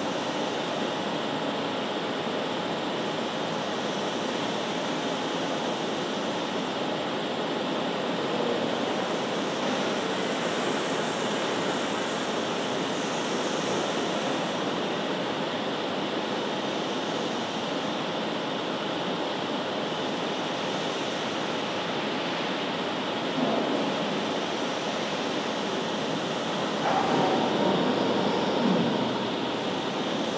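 Steady running noise of a Bargstedt TLF 411 panel storage gantry traveling on its overhead rails, with a brief louder moment and then a louder mechanical stretch lasting a couple of seconds near the end.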